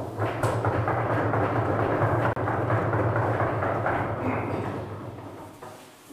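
Audience applause at the close of a lecture: a dense patter of many hands that starts at once and dies away over the last second or two.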